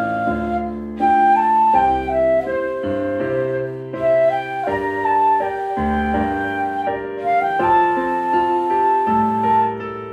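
Flute playing a slow, slurred melody with long held notes over a piano accompaniment.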